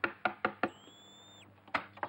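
Rapid knocking on a wooden door: four quick knocks, a short high whistling tone, then more knocks near the end.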